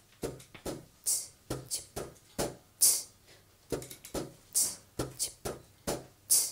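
Sparse rhythmic percussion of soft knocks and clicks, with a sharp hiss-like accent recurring about every second and three quarters in a repeating pattern, as the opening beat of a live song.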